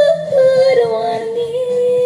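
A woman singing one long held note into a handheld microphone, wavering a little at first and then steady, over karaoke backing music.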